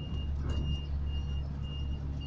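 An electronic warning beeper sounding a high, single-pitched beep at an even pace, about four beeps in two seconds, over a low steady rumble.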